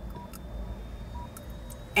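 Low steady rumble in a car cabin, with two short faint electronic beeps about a second apart.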